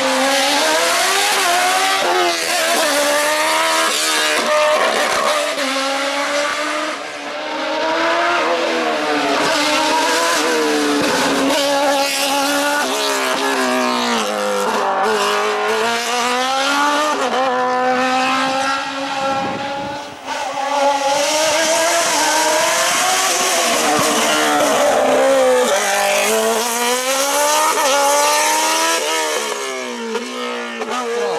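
Open-cockpit sports prototype race car's engine revving hard through a cone slalom, the revs climbing and dropping again and again as the driver brakes, shifts and accelerates between the chicanes.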